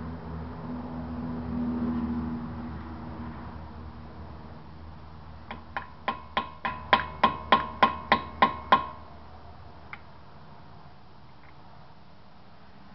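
A hammer driving a screwdriver against the staked lock collar of a 2014 Subaru XV Crosstrek's front axle nut: about a dozen sharp, ringing metal taps, roughly three a second and getting louder, then one lighter tap a second later. The blows are bending back the crimped lock so the axle nut can be loosened.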